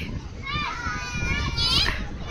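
Children's voices at a playground: distant high-pitched calling and chatter, with one drawn-out high call in the second half.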